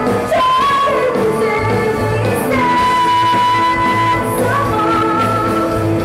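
Live rock band playing: a woman singing lead over electric guitar, bass and drums.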